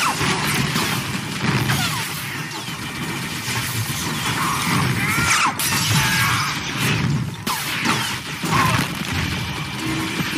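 A sci-fi blaster firefight: many quick blaster shots with short swooping zaps, impacts and shattering debris, over a music bed.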